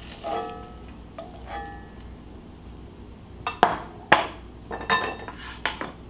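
Several sharp clinks and knocks of kitchen utensils and cookware, coming in the second half, after a few faint held tones at the start.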